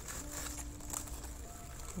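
Shredded crinkle-paper packing filler rustling as it is pushed aside by hand in a cardboard box. A faint steady low tone is held for about a second partway through.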